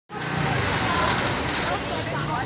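Small motorcycle engine running as it rides past close by and pulls away, mixed with the voices of students chattering.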